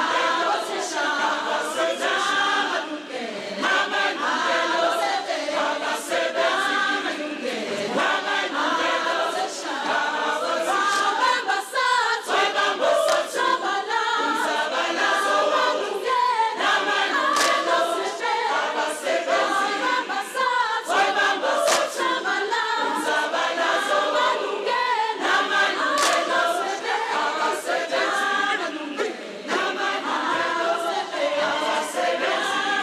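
A large choir singing a traditional African song a cappella, many voices in harmony, with scattered hand claps over the singing.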